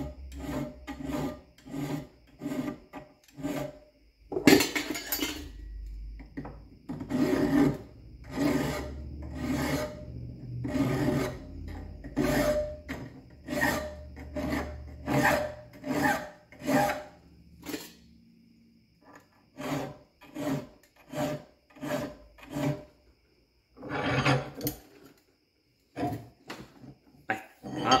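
Hand file rasping in short, even strokes across the teeth of an unhardened shop-made dovetail cutter held in a vise, filing relief into the flutes. There is a single louder knock about four seconds in and a short pause near the end.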